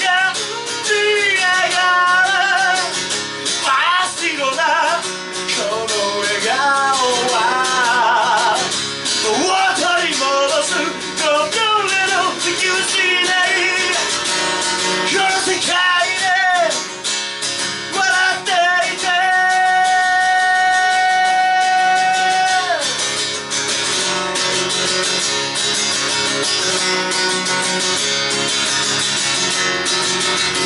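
A man singing while strumming an acoustic guitar, his voice wavering through the lines. About twenty seconds in he holds one long note. After it the voice stops and the guitar plays on alone.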